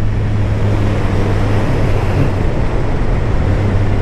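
1987 Kawasaki ZL1000's four-cylinder engine running steadily at road speed, with wind rushing over the microphone.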